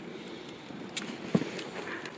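Quiet outdoor background with a faint steady hiss, broken by a small click about halfway through and a short knock soon after: handling noise as the squash and the camera are moved.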